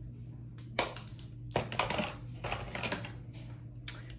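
Scratchy rustling and small clicks from a makeup brush and powder compact being worked and handled, in a few short bursts with a sharper click near the end.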